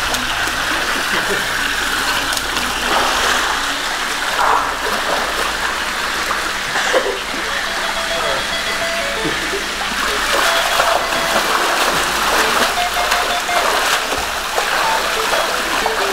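Water splashing and churning in a small swimming pool as people wade and swim through it, over a steady sound of running water.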